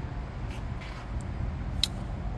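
Steady low background rumble with a few faint clicks and one sharper tick near the end.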